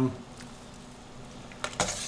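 A few short metallic clicks near the end as a metal spoon knocks against a stainless steel pot, after a quiet stretch.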